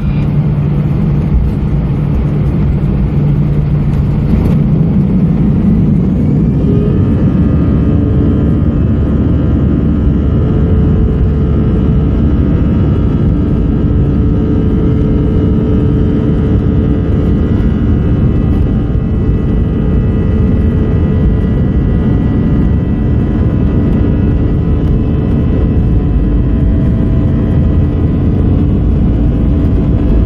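Airbus A320's CFM56 jet engines heard from inside the cabin over the wing, spooling up with a rising whine about six seconds in and then holding a steady, many-toned whine over a heavy rumble as power is set for takeoff.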